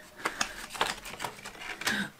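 A cardboard subscription box being opened by hand: a run of irregular small clicks, taps and rustles of the packaging.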